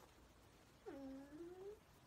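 A short, faint closed-mouth "mm" from a voice, about a second long, dipping in pitch and then rising again.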